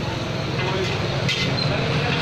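Fried rice being stirred in a large wok with a metal spatula: frying and scraping over a steady roar, with a sharper scrape of the spatula on the wok about a second and a half in.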